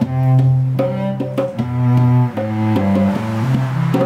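Cello bowed in long, low held notes that step to a new pitch every second or so, with a few hand strokes on a Nyabinghi drum struck over them.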